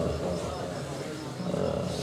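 A man's amplified voice trailing off into a short pause in his speech, leaving a low steady hum from the public-address system.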